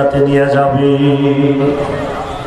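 A man's voice chanting in long, held melodic phrases, the sung delivery of a Bengali waz sermon, with one steady note dying away near the end.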